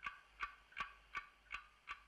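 Faint, evenly spaced ticks, a little under three a second, each with a short bright ring, like a clock-tick sound effect.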